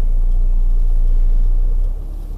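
Deep vehicle rumble heard from inside a car's cabin. It swells for about two seconds and then drops off sharply near the end.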